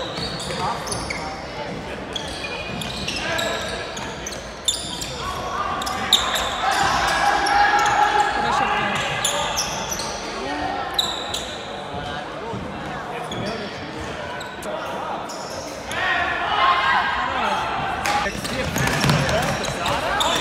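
Players' shouts and calls echoing in a large sports hall, mixed with footsteps and shoe squeaks on a hardwood court and a few sharp knocks.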